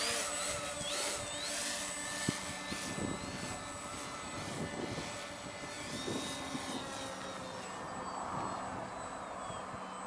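Foam RC aerobatic plane's electric motor and propeller whining, the pitch rising and falling with quick throttle changes as it hovers nose-up on the prop, then settling to a steadier whine as it flies away and climbs.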